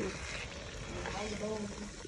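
Egusi soup sizzling in its oil in a cast-iron pot while a metal ladle stirs it through.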